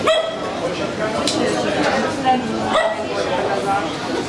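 A dog yelping and yipping a few times, the first sharp yelp right at the start, over people's chatter.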